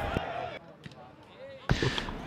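A football being kicked: a few dull thumps over faint voices and open-air background noise.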